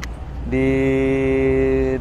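Speech only: a man's voice drawing out one syllable ("diii…") in a long, level tone that starts about half a second in.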